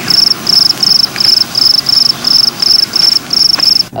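Crickets chirping in an even rhythm, about three short high chirps a second. It is a stock sound effect standing for a comic silence where the expected response never comes.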